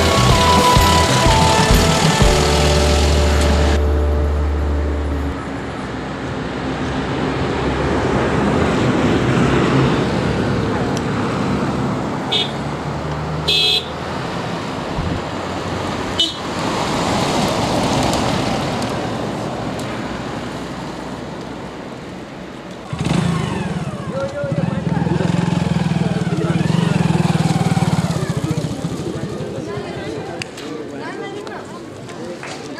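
Decorated Mahindra Bolero jeeps driving past on a road: engine and tyre noise swells and fades as they pass, with a couple of short horn toots about midway.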